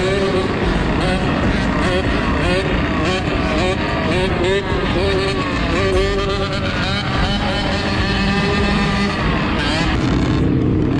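Several dirt bike engines revving up and down as the riders hold wheelies on the throttle, with the pitch rising and falling throughout.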